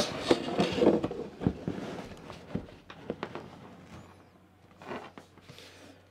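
Cardboard packaging and paper booklets being handled: an inner box slid out of its cardboard sleeve with rubbing, scraping and small clicks, busiest in the first two seconds, then fainter handling with a brief rustle near the five-second mark.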